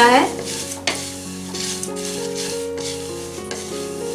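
Wooden spatula stirring dry flattened rice flakes (poha) in a metal kadai as they are lightly dry-roasted, a steady rustling and scraping of the flakes against the pan.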